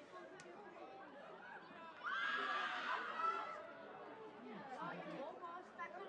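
Several voices shouting and calling over one another, with one louder shout starting about two seconds in and lasting a little over a second.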